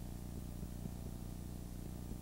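Steady low electrical hum, in evenly spaced low tones, on an old video recording's soundtrack, with faint gym crowd noise beneath it.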